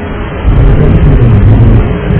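Cabin background noise of a DC-9 airliner on the cockpit voice recorder's cabin channel: a dense, muffled rushing noise with the treble cut off. It swells louder about half a second in and drops back near the end.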